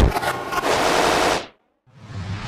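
Logo intro sound effect: a loud, rattling, gunfire-like burst that cuts off about a second and a half in, followed near the end by another swell of sound starting to build.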